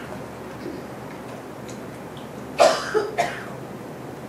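A person coughing: three coughs in quick succession a little past halfway, the first the loudest.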